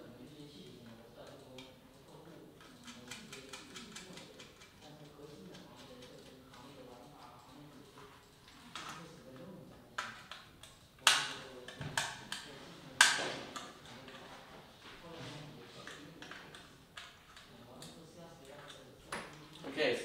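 Small clicks and taps of 3D-printed plastic parts being handled and bolted together, with a quick run of faint ticks early and a few sharp knocks about ten to thirteen seconds in.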